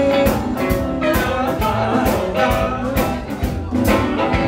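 Live blues band playing: electric guitars, drum kit and upright bass, with a harmonica played cupped into a microphone over them.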